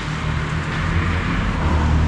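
Steady low rumble of road traffic with a hiss over it.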